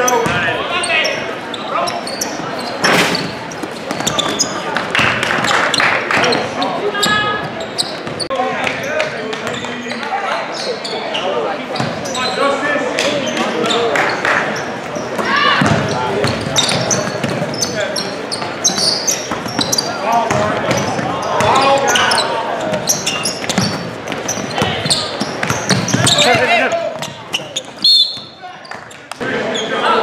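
Basketball being dribbled on a hardwood gym floor, with indistinct voices of players and spectators calling out across the gym. A brief sharp loud sound stands out near the end.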